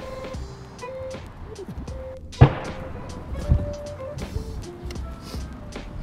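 Background music with steady held notes. About two and a half seconds in, one sharp, loud impact on a Kali bicycle helmet in a repeated-blow crash test, followed by a softer thump about a second later.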